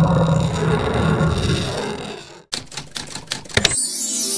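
Intro sound effects: a low rumbling effect that fades and cuts off about two and a half seconds in, then a quick run of typewriter-style clicks as on-screen text types out, with music starting at the very end.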